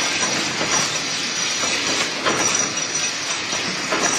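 Coil wrapping machine running as it wraps a coil in stretch film: a steady mechanical noise with a thin high whine and faint, uneven knocks.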